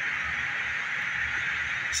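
Steady background hiss with a low rumble underneath, and no other distinct sound.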